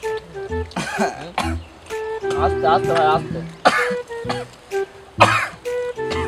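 Background music with a steady, looping beat, over which a man coughs and clears his throat about four times, with a short voiced sound in the middle.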